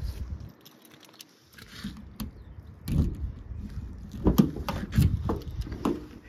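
Rear door of a Ford Transit Custom van being unlatched and opened: a run of sharp clicks and knocks from the handle and latch in the second half.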